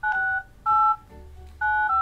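Touch-tone (DTMF) keypad beeps from a smartphone as a phone number is dialed. There are four short two-note beeps: two about half a second apart, a pause, then two more in quick succession near the end.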